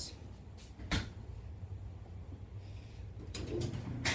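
Clothes dryer being restarted: a sharp click, then the machine's low, steady motor hum, which grows stronger near the end as the drum gets going.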